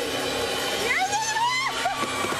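A person's high-pitched vocal exclamation, rising and then held for about a second, starting about a second in, over steady background noise.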